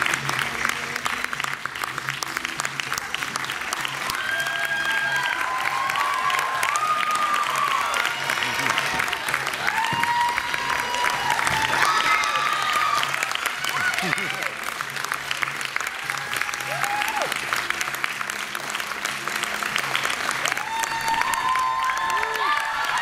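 Audience applauding steadily, with dense clapping throughout and scattered high cheering shouts and whoops rising and falling over it.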